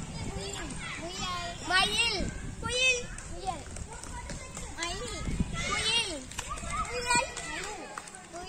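Children's high-pitched voices talking and calling out while they play a game.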